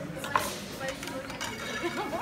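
A large kitchen knife and short ribs being handled on a wooden carving board: one sharp knock about a third of a second in, then a few lighter clicks, over faint restaurant voices.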